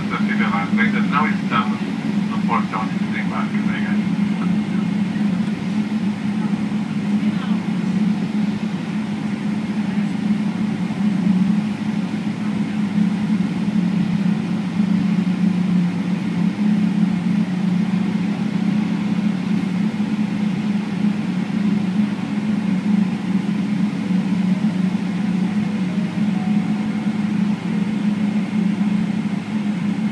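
Steady low cabin drone of a Boeing 777-300ER on the ground, heard from a window seat beside the wing: its GE90 engines are idling and the cabin air system is running. Faint voices are heard in the first few seconds.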